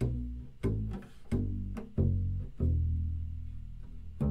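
Double bass playing five low notes one after another up its E string: open E, F sharp, G, then A and B shifted into third position. Each note starts cleanly about two-thirds of a second after the last, and the final note is held for over a second.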